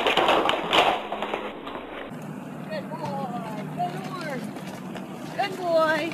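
People's voices laughing and exclaiming without clear words. About two seconds in the sound cuts to gliding, pitched calls over a low steady hum.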